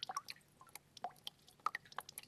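Faint, irregular drip-like clicks and plinks, several a second, starting suddenly after a moment of silence.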